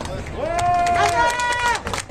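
A high-pitched voice calling out in a long drawn-out cry, stepping up to a higher held note partway through.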